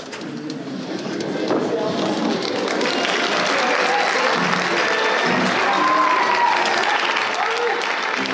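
Auditorium audience applauding, the clapping swelling over the first three seconds and then holding steady, with voices mixed in.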